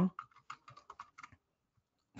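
Computer keyboard typing: about nine quick keystrokes over a little more than a second, then the typing stops.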